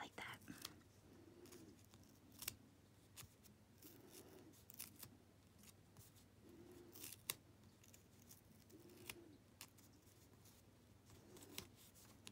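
Near silence with faint paper handling: scattered soft ticks and rustles as fingers press and smooth a thin paper sticker onto a planner page.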